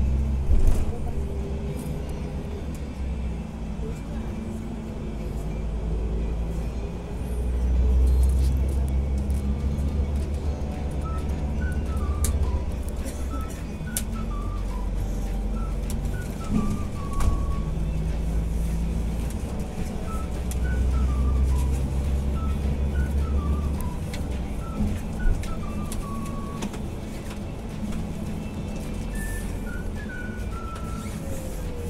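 Coach engine and road rumble heard inside the moving bus cabin, a low drone that swells and eases a few times. Music with short falling melodic notes plays over it.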